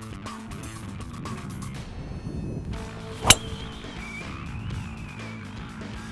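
Background music, with a single sharp crack about halfway through: a driver's clubhead striking a teed golf ball.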